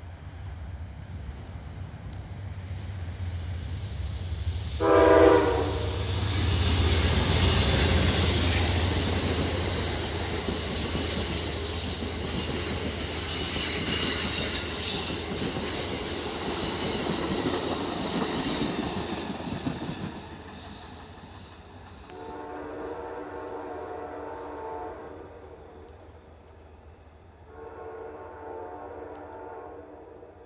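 Amtrak P42DC diesel locomotive's horn sounds one short blast about five seconds in, then the passenger train passes at speed with a loud deep rumble and high-pitched wheel and rail noise for about fifteen seconds. In the last third, two longer, fainter horn sounds come from another train approaching in the distance.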